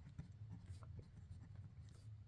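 Faint scratching of a Uni Kuru Toga Dive 0.5 mm mechanical pencil's lead on notebook paper as a word is handwritten.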